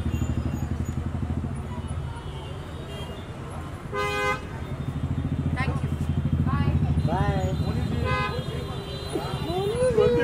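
Street traffic: a vehicle engine running at idle with a low, evenly pulsing rumble, and a short car horn toot about four seconds in.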